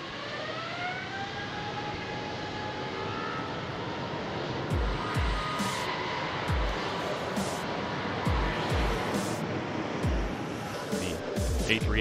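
Airliner jet engines spooling up for a takeoff roll: a rising whine over the first two seconds, then a steady jet noise. From about five seconds in, background music with a deep bass beat plays over it.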